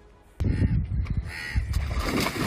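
Amateur outdoor footage cutting in suddenly about half a second in: wind buffeting the phone microphone and water sloshing as a man drops into a deep, muddy water hole, with a short caw-like cry near the middle.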